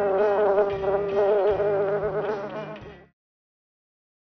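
Buzzing-bee sound effect, a wavering buzz, which cuts off suddenly about three seconds in.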